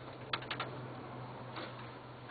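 A quick run of three or four light clicks and taps from hands working a strip along a screen door frame, over a steady low hum.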